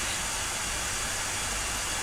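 Steady hiss of background noise with a low rumble underneath, even and unchanging throughout.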